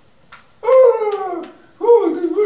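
A person's voice making whimpering, howl-like cries for a plush animal puppet: a falling wail lasting about a second, then another cry starting near the end.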